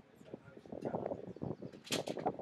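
Indistinct voices of a small group of people, with scattered knocks and a sharp click just before the end.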